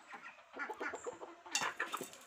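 Domestic chickens clucking as they feed, a run of short clucks, with a louder, harsher burst near the end.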